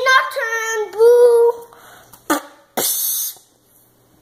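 A young child's high-pitched, drawn-out sung "aaah", wavering in pitch for about a second and a half, then a short breathy hiss about three seconds in.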